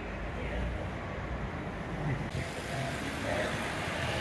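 City street ambience: a steady wash of road traffic noise with faint, indistinct voices. About two seconds in the hiss abruptly turns brighter.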